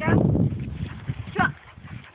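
A puppy's high-pitched yelps: one falling in pitch at the start and a shorter one about a second and a half in, over low rustling that fades out early.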